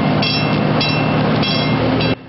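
Passenger train running at a level crossing: steady rail and engine noise with a low hum. A high-pitched tone pulses three times over it, about every 0.6 s.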